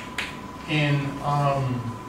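Chalk tapping twice sharply on a blackboard as a symbol is written, followed by a man's voice in two short drawn-out sounds.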